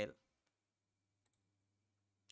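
A single faint computer mouse click about a second in, in near silence.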